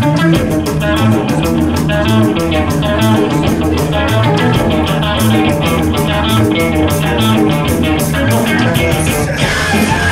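A mathcore band playing live: distorted electric guitar and bass over fast, busy drumming. Near the end a wash of crash cymbals comes in as the music gets heavier.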